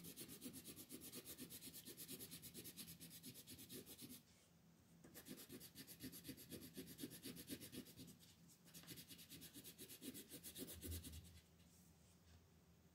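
Coloured pencil shading on paper in quick back-and-forth strokes, soft and scratchy. The strokes come in three spells with short pauses between them, the last one stopping about a second before the end.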